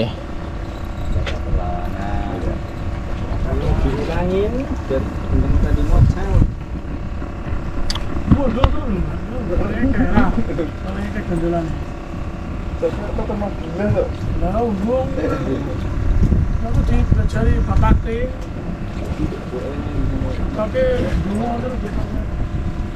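A boat engine running with a steady hum, under people talking.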